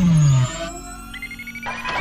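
Synthesized intro sound effects: a loud tone gliding steeply down in pitch that ends about half a second in, then a quieter stretch of sustained electronic tones with a high tone slowly rising.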